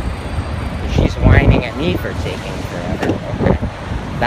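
Wind buffeting the microphone over street traffic noise, with voices talking indistinctly in the middle of the stretch.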